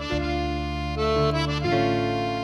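Background music: sustained held chords on a reedy instrument, the chord changing about a second in and again shortly before the end.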